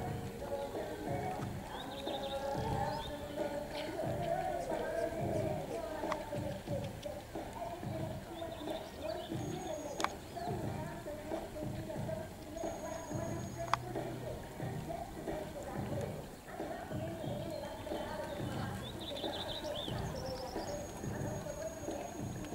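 Hoofbeats of a horse cantering on a sand arena, a soft thud about every two-thirds of a second, under background music. Two sharp clicks stand out, about ten and fourteen seconds in.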